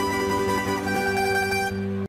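Plucked-string band music: acoustic guitars and other plucked strings playing a closing passage, with sustained notes ringing and a few chord changes.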